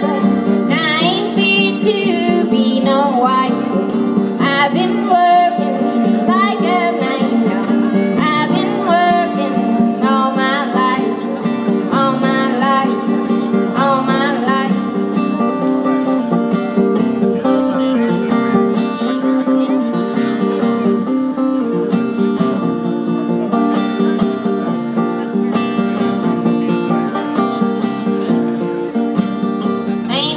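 Live blues song by a solo female singer accompanying herself on acoustic guitar. Her high, wavering voice leads through the first half, then the guitar carries on mostly alone for a stretch before the singing returns near the end.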